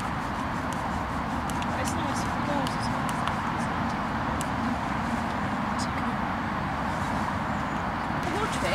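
Hand screwdriver turning a screw into a wooden plaque on a post, heard as faint scattered clicks over a steady outdoor rumble and hiss.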